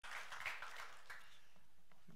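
Faint scattered clapping from a congregation in a hall, dying away within about the first second and leaving quiet room noise.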